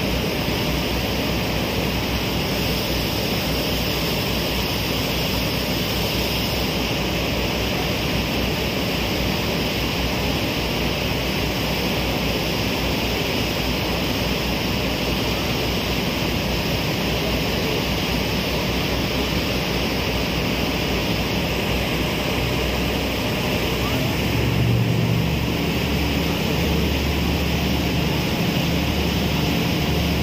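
Steady drone of a passenger ferry underway: engine hum mixed with the rush of wind and water. The low engine hum grows louder about 25 seconds in.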